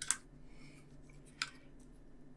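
Two small, sharp clicks of a thin screwdriver and pliers against a small plastic model part while a tiny screw is being started, one right at the start and one about a second and a half in, over a faint steady hum.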